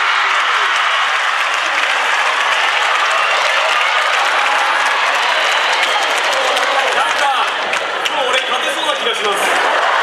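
Audience applauding steadily in a theatre hall, with a few voices mixed in near the end.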